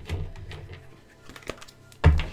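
A few light clicks and taps at irregular intervals, the sharpest near the start and about one and a half seconds in, over a low steady hum.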